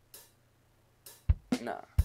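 Sparse programmed drum hits from an FL Studio beat: a short hi-hat-like hiss right at the start, then a deep kick-like thump a little past a second in and a sharp click at the very end, with a short spoken word between.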